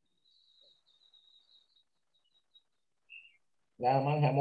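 Faint high-pitched bird chirping: a thin twittering call for about a second and a half, then one short chirp about three seconds in. A voice starts speaking just before the end.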